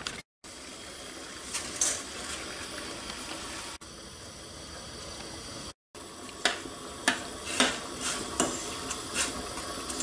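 A steel pot of water at a rolling boil on a gas hob, bubbling with a steady hiss, as whole-wheat spaghetti go into it. In the second half a metal spoon clinks against the pot several times while pushing the spaghetti down into the water.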